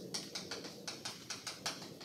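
Chalk writing on a blackboard: a quick, irregular run of sharp taps and short scratches as letters are written, several a second.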